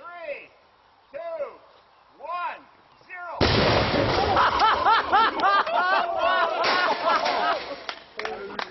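Car side-curtain passenger airbag detonating with a sudden loud bang about three and a half seconds in. Shouting and whooping voices follow.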